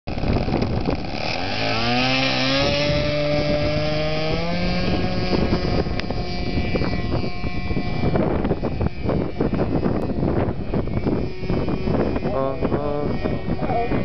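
Remote-control model airplane's motor running up to full power for takeoff, its pitch rising over the first few seconds and then fading as the plane flies off into the distance. Wind buffets the microphone throughout.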